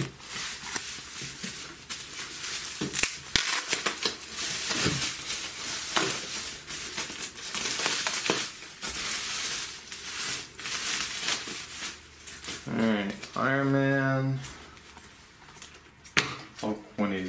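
Bubble wrap and plastic wrapping crinkling and crackling, with many small clicks, as a wrapped bundle of comic books is pulled open by hand. Near the end a person makes a short drawn-out vocal sound.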